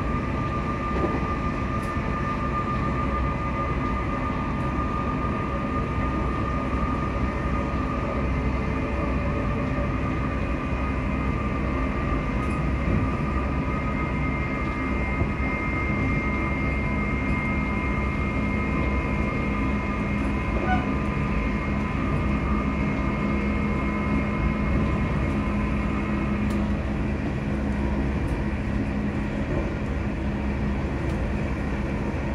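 Interior running noise of a ScotRail Class 334 electric multiple unit in motion, heard from inside the passenger saloon: a steady low rumble of wheels on the track, with a steady high whine throughout. A lower hum grows stronger about halfway through, and the higher whine fades near the end.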